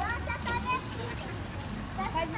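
Children's voices chattering in the street, with a short stretch of a child's high-pitched speech in the first second.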